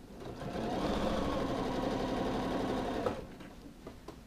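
Janome sewing machine stitching through a jacket sleeve's hem: it speeds up over the first half second, runs at an even, fast stitching rate, and stops abruptly about three seconds in.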